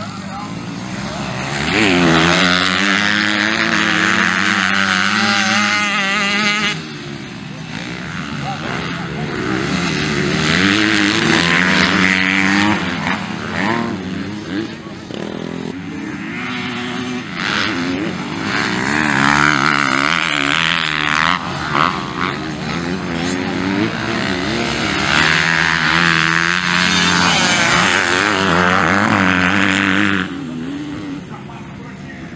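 Motocross dirt bike engines revving hard, their pitch rising and falling with the throttle as the bikes race past, loud throughout, with a sudden drop in level about seven seconds in.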